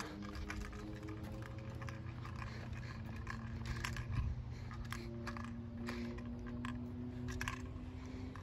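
Faint outdoor background of a low steady rumble under a soft hum that holds one pitch and then shifts, with scattered light clicks and taps from a handheld phone being moved about.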